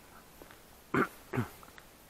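An animal calling twice in quick succession, two short calls falling in pitch, about half a second apart.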